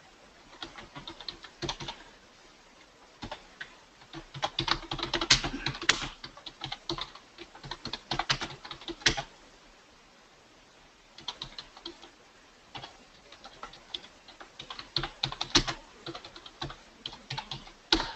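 Typing on a computer keyboard: quick runs of keystrokes, with a pause of a second or two about halfway through.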